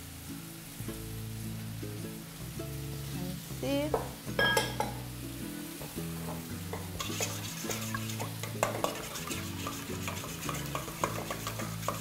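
Gruyère cheese grated on a stainless-steel box grater: repeated rasping strokes, thicker and faster from about seven seconds in, over soft background music.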